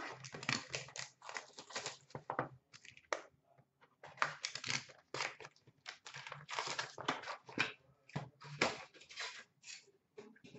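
Hockey card packs being torn open and their foil wrappers crinkled by hand, a run of irregular rustling and tearing with short pauses, as cards and card boxes are handled.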